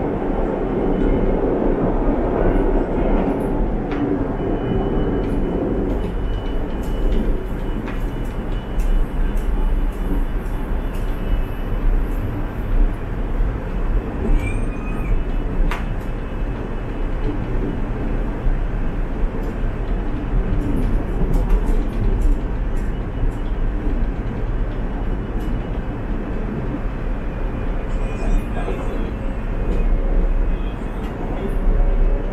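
Interior running noise of a KTM Class 92 electric multiple unit moving at speed: a steady low rumble of wheels on rail through the car body, with scattered light clicks and rattles.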